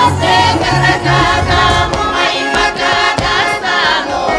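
Russian folk music: accordion with sung voices. About halfway through, the accordion's bass stops and an Old Believer women's folk choir carries on singing unaccompanied, voices wavering.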